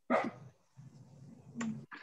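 A dog barking in the background: one short bark at the start and a shorter one near the end, with a low hum between.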